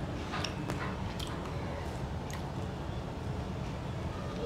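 Close-miked chewing of a mouthful of chicken manchow soup: a handful of short, sharp wet mouth clicks in the first two seconds or so, then softer chewing, over a steady low background hum.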